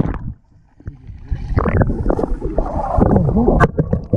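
Lake water heard from underwater: muffled sloshing and gurgling around the submerged microphone, with muffled voices from above the surface. A short near-quiet dip comes about half a second in, and a sharp click comes near the end.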